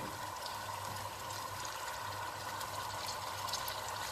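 Hot olive oil sizzling steadily in a pan as whole baby cuttlefish are laid into it, with a few faint crackles.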